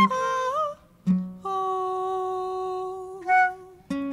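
Improvised acoustic music: plucked acoustic guitar notes, then a long steady melody note held for about a second and a half, followed by a short higher note.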